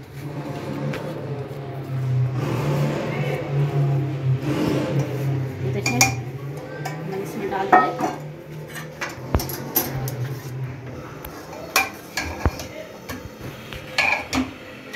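A metal spoon scraping and knocking against a wok and an aluminium pressure cooker as fried masala is scraped into boiled daal and stirred in, with sharp clinks spread through the second half. A low steady hum runs under the first half.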